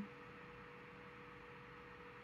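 Near silence: room tone with a faint, steady, high-pitched hum.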